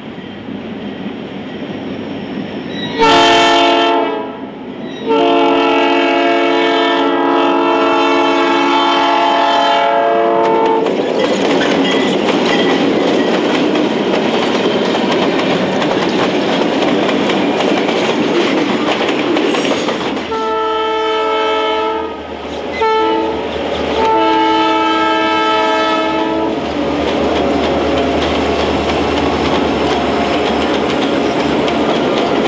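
Northwestern Pacific diesel freight locomotives sounding a multi-note air horn: a short blast, then a long one of about six seconds. Then comes the steady rumble and wheel clatter of the train passing close by, and later the horn sounds again, long, short, long, over the passing train.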